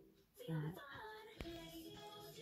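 A high voice singing a short phrase of a few held and gliding notes, with a sharp click about one and a half seconds in.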